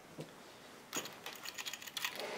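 Faint metallic clicking and ticking as braided picture-hanging wire is worked through a small metal triangular hanger. One click comes just after the start, and a quick run of clicks begins about a second in.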